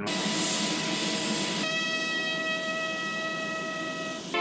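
Jet aircraft engines running: a loud, steady rushing hiss, joined about one and a half seconds in by a steady high whine.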